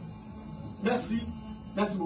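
Steady electrical mains hum under a pause in a man's speech, broken by two short spoken fragments, one about a second in and one near the end.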